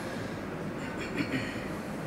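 A pause between verses of a Quran recitation: steady background noise of the room and the live microphone and loudspeaker system, with no voice.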